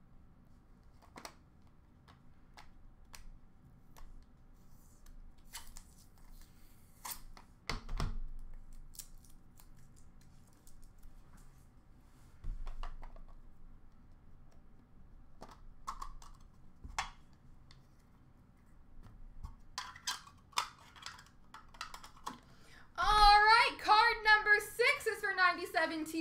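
Scattered light clicks and taps of trading cards and rigid plastic card holders being handled, with one louder knock about eight seconds in. A man's voice starts near the end.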